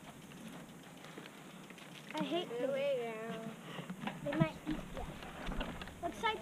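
Unintelligible high-pitched children's voices talking and calling out from about two seconds in, over a steady low hiss, with a few light clicks.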